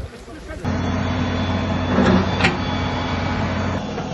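An engine running steadily with a low hum. It starts suddenly about half a second in and drops away shortly before the end. A brief sharp sound comes about two and a half seconds in.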